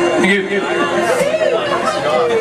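Several people talking and chattering in a bar room just after the song has ended, with a lingering steady tone that stops about halfway through.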